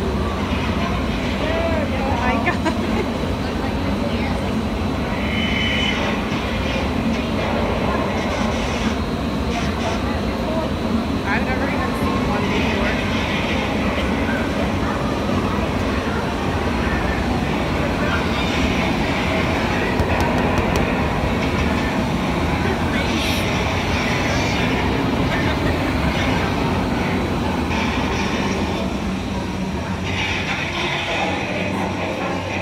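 Strong, steady rushing wind from a hurricane simulator's blowers, with the simulated wind at about 53 to 79 mph.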